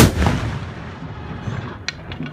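Blank salvo from a black-powder blunderbuss: one loud shot at the very start that echoes and dies away over about a second. A short sharp click follows near the end.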